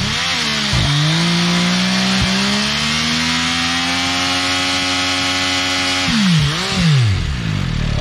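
Motorcycle engine held at high revs during a burnout, the rear tyre spinning on the asphalt with a steady hiss. The revs climb over the first few seconds and hold, then drop about six seconds in, followed by a couple of short throttle blips.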